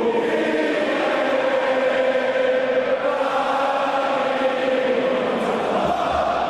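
Many voices singing a chant together in long held notes that shift pitch only slowly.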